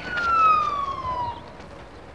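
Emergency vehicle siren wailing. Its pitch slides down from the top of a slow wail and fades out after about a second and a half.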